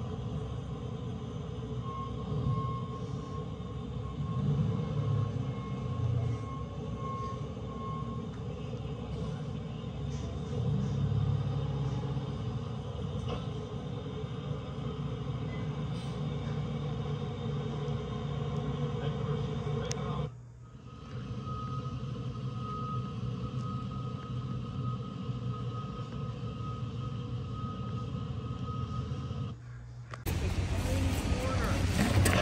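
Steady low rumble of heavy quarry machinery running, with a faint steady whine above it. The sound drops out briefly about two-thirds of the way through, then resumes with a slightly higher whine.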